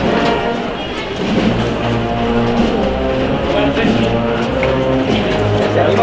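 Processional wind band (banda de música) playing a march: sustained brass and woodwind chords over held low bass notes.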